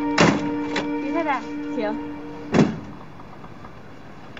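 Doors of a vintage car: a heavy thunk near the start, then another about two and a half seconds in as the rear door is unlatched and swung open. Background music of held notes plays underneath and stops shortly after the second thunk.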